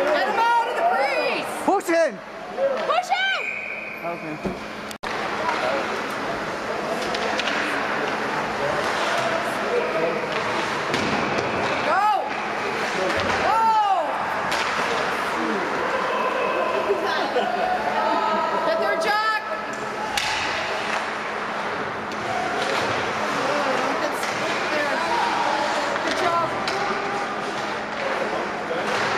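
Ice hockey game heard from rinkside: indistinct voices of players and onlookers calling out, with occasional knocks of sticks and puck against the boards.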